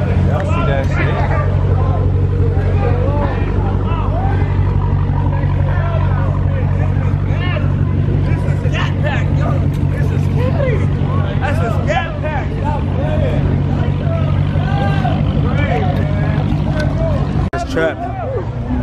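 A Dodge Hellcat's supercharged V8 held at steady high revs in a burnout, with a crowd shouting and chattering over it. The engine sound cuts off abruptly just before the end.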